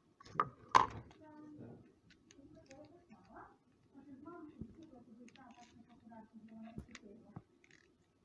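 Two sharp clicks about half a second in from handling a plastic-and-card hearing-aid battery blister pack, followed by quiet, low speech.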